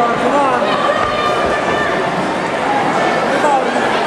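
Crowd of spectators talking over one another, a steady babble with single voices calling out now and then.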